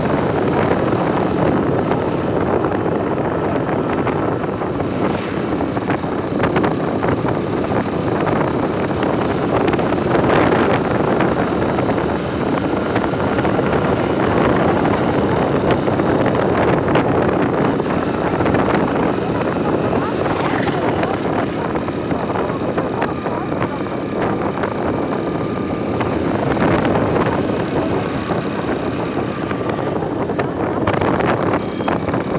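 Steady road and engine noise of a moving vehicle heard from inside, with wind rushing past the open window.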